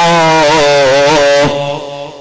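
A man's voice chanting one long, held, wavering phrase in the melodic style of a sermon, breaking off about one and a half seconds in.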